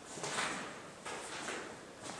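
Soft scuffing and rustling of a person moving about in a small concrete room, in two swells about a second apart.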